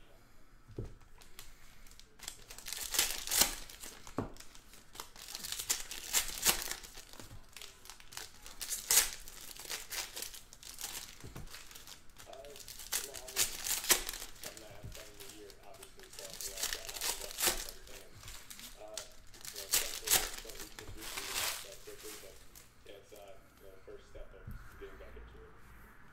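Foil trading-card packs being torn open and crinkled, in repeated bursts about every three seconds, as cards are pulled out and handled.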